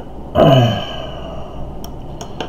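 A man's voiced sigh about half a second in: one loud exhale lasting about half a second, falling in pitch.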